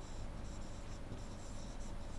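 Faint scratching of a stylus writing a word by hand on a pen tablet.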